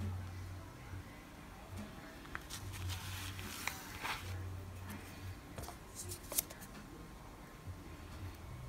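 Quiet handling of nail-stamping tools: a silicone stamper and a metal stamping plate are picked up and moved, giving soft rubbing around the middle and a few small clicks and taps.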